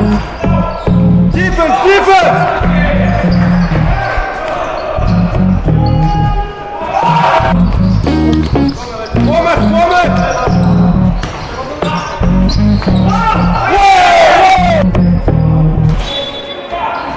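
Basketball bouncing on a wooden gym floor during play, under a music track with a heavy bass beat.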